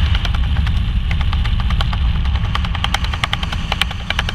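Wind buffeting the microphone of a helmet camera under an open parachute canopy: a steady low rumble of air, with irregular sharp ticks and flutters scattered through it.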